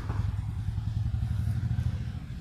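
Burning firework close to the microphone: a steady low rumble with fast fine crackle.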